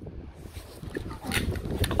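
Low rumbling handling noise on a handheld phone microphone, with a couple of faint short clicks near the end.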